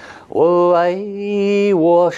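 A man chanting a mantra in long sung syllables: a quick breath, then one long held note that dips at its end, with the next note beginning right at the end.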